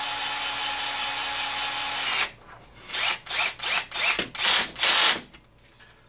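Power drill with a driver bit running steadily for about two seconds as it drives a bolt into a retaining nut in a plastic RC-car hub carrier, then a quick series of about seven short bursts.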